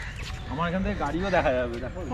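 A person talking, over a steady low rumble of wind on the microphone.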